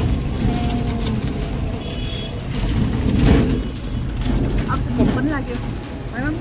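Steady low rumble of an open-sided rickshaw in motion, swelling louder about halfway through.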